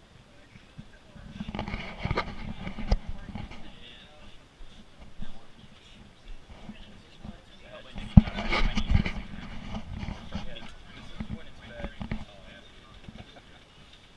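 Mine tour train cars rattling and clacking on the track as the train gets moving, in two louder spells of clatter with sharp clicks, mixed with indistinct voices of passengers.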